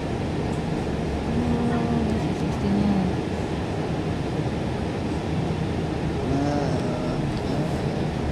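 Steady rumble of a moving bus heard from inside, engine and road noise running evenly, with a few brief voices in the background.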